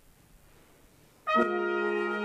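A brass band comes in suddenly about a second and a half in, playing a loud held chord of trumpets, horns and trombones, after a moment of quiet room tone.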